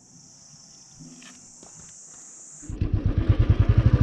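A quiet stretch with only a faint steady high hiss, then, about three-quarters of the way through, a motorcycle engine comes in loud, running with a quick, even beat as the bike rides a dirt road.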